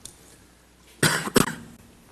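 A person coughing about a second in, a short rough burst with a sharp catch near its end, over quiet room tone.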